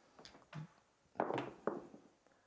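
A few short clacks and a brief rattle about a second in, from casino chips and dice being handled on a craps table.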